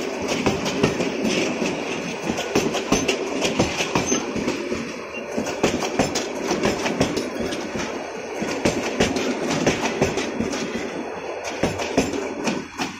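Bangladesh Railway intercity express passenger coaches rolling past close by. Their steel wheels make a steady, loud rumble with rapid clickety-clack over the rail joints.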